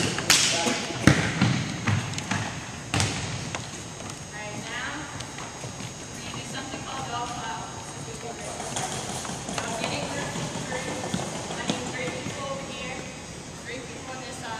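A few sharp thuds of a volleyball being hit and bouncing on a hardwood gym floor in the first three seconds. Background chatter of voices follows.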